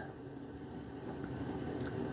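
Quiet room tone: a faint, steady low hum with light hiss, and no distinct event.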